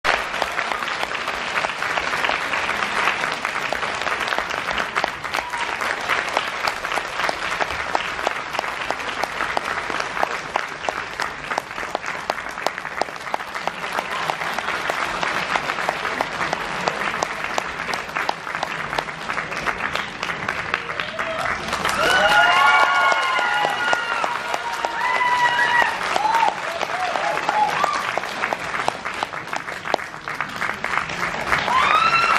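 Theatre audience applauding steadily through a curtain call. From about twenty-two seconds in, a voice rises over the clapping for several seconds, the loudest part.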